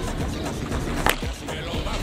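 A baseball bat hitting a pitched ball: one sharp crack about a second in, over background music.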